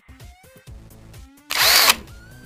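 Light background music with a steady beat. About three-quarters through, a loud burst of noise lasting under half a second cuts across it: a slide-transition sound effect.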